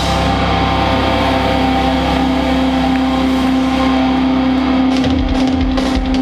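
Distorted electric guitars and bass holding one sustained, ringing chord that stays steady for about five seconds. Drum hits come back in near the end.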